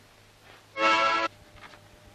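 A harmonica blown once: a single short chord of about half a second, starting about three-quarters of a second in and cutting off sharply.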